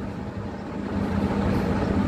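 A steady low mechanical hum with a constant tone, swelling louder over the first second.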